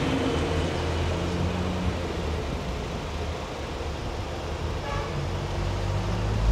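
2013 Honda Freed's 1.5-litre four-cylinder petrol engine idling steadily with its bonnet open, a low even hum.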